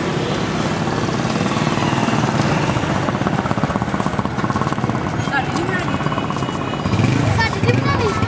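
Steady street traffic noise with motorcycle engines in it and the voices of passers-by in the background.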